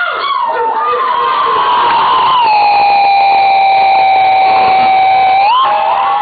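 A long, high-pitched vocal call from the crowd, held on one pitch for about three seconds, then sweeping up and breaking off just before the end, over crowd cheering.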